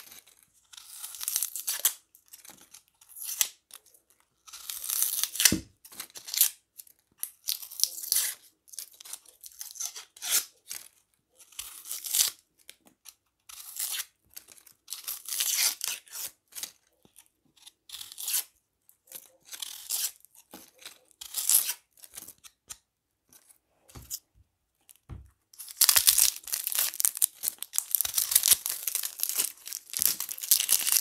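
Dry, papery skins of yellow onions being peeled and torn off by hand and with a knife, close to the microphone: irregular crackling tears with short pauses between them. In the last few seconds the crackle becomes denser and continuous.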